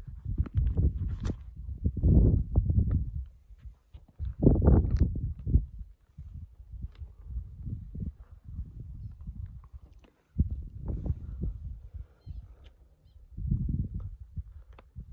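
Wind buffeting a phone's microphone in uneven gusts, low rumbling surges that rise and die away, with a few faint clicks in between.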